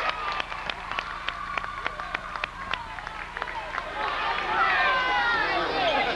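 Quick, irregular knocks on a gym floor during a basketball game, about four or five a second, from running feet and the bouncing ball. About four seconds in, voices calling out from the crowd and players rise over the play.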